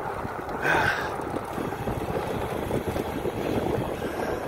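Wind buffeting a phone's microphone while moving along a road, a steady rough rushing, with a brief louder hiss about a second in.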